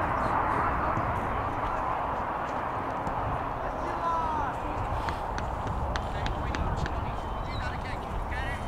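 Open-air soccer field ambience: indistinct voices of players and spectators across the pitch over a low wind rumble on the microphone. A few sharp clicks come in the second half.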